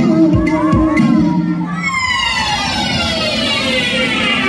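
Recorded dance music with a beat and vocals for about two seconds, then a long falling sweep that slides steadily down in pitch while the beat drops away.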